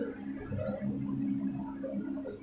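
Faint voices of several students chanting a line of Arabic verse together, away from the microphone, in long held tones.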